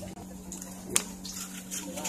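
A folded paper slip being unfolded by hand, with faint rustling and one sharp crackle about a second in, over a steady low hum.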